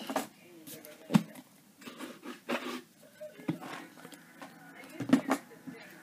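Card and paper of a wire-bound address book being handled on a table: scattered light taps and knocks with some rustling, the sharpest knock about a second in and another about five seconds in.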